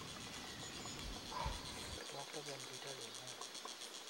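Insects chirring in a steady, rapid, even pulse, high-pitched, with a faint murmur of a voice in the second half.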